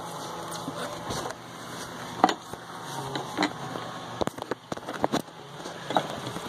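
Scattered clicks and knocks over a faint steady hum as an outboard motor is pushed by hand over to its port steering lock, moving the SeaStar hydraulic steering cylinder.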